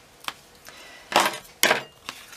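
Two short, papery rustles a little past the middle as a scored cardstock box piece with its tape backing is handled and lifted.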